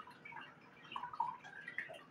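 Faint, short wet slurps of someone sipping very hot coffee from a mug, a few clustered about a second in.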